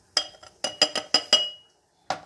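An embossed glass lid clinking against a glass jar as it is handled and set down: about six sharp clinks in just over a second, each with a short glassy ring, the last one ringing on briefly.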